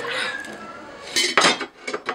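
Metal kitchen knives clattering and clinking as they are handled, with a run of sharp clinks in the second half.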